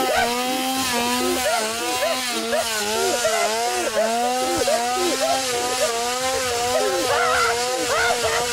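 Chainsaw engine running and being revved over and over, its pitch wavering up and down about twice a second.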